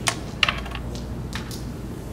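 Carrom striker flicked across the board and clacking into the carrom men: a sharp click right after the flick, a louder cluster of clacks about half a second in, then two more clicks near one and a half seconds as the pieces knock together.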